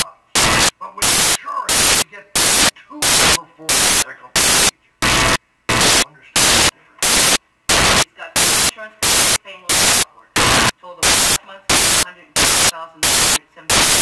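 Loud bursts of hissing static, about two a second in a steady rhythm, with faint dialogue showing through in the short gaps between them.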